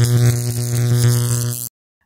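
Short electronic logo sting for a title card: a steady, low held synth tone with a bright hissy upper layer, cutting off abruptly near the end.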